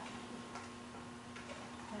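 A few light clicks of a serving spoon against a pan on the stove, three in all, over a steady low hum in the room.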